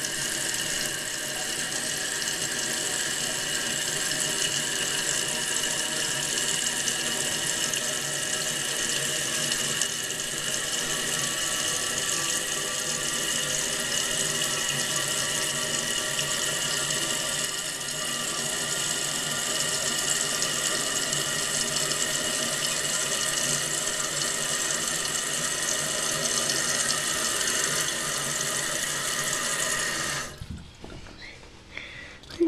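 Fluidmaster 400A fill valve refilling a toilet tank after a flush: a steady hiss of rushing water with a few steady whistling tones in it, which stops abruptly at the end.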